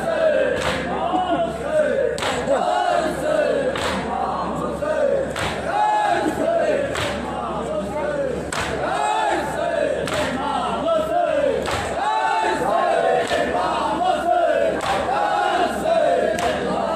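A crowd of men chanting a noha in unison, led over a microphone, with sharp rhythmic slaps of matam (hands beating on chests) at about one every three-quarters of a second.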